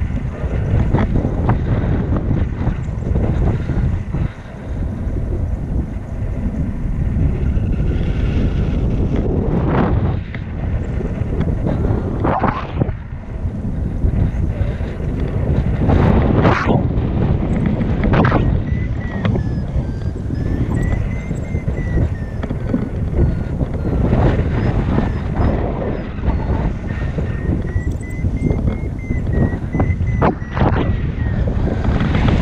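Wind rushing over an action camera's microphone on a selfie stick, held in the open air of a paraglider in flight; a loud, steady low rumble that gusts up and down with occasional sharper buffets.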